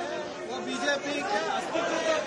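Speech: several voices talking over one another in a press scrum.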